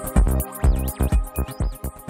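Electronic music with a steady beat of heavy bass hits, about two a second. A high synth line warbles up and down in the second half.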